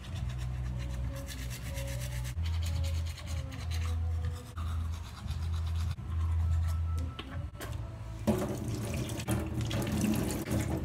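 Toothbrush scrubbing teeth, in uneven strokes. About eight seconds in, a rush of running water starts.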